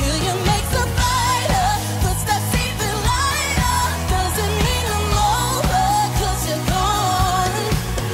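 A woman singing a pop song with a band, her voice wavering around the melody over a steady bass and beat.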